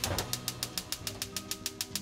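Gas hob burner igniter clicking rapidly and evenly, about eight sharp clicks a second, as the burner under a frying pan is lit.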